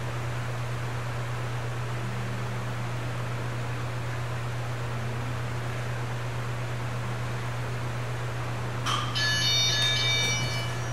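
Workout interval timer giving an electronic beep of several high tones together, lasting about a second near the end. It signals the end of a 30-second exercise interval. Under it is a steady low room hum.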